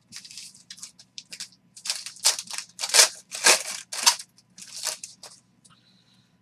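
Foil trading-card pack wrapper being torn open and crinkled, a run of irregular crackling bursts that are loudest in the middle.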